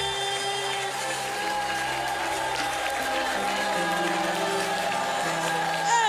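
Live worship band music: held chords sustained over a bass line that steps from note to note, with no clear singing until just after the end.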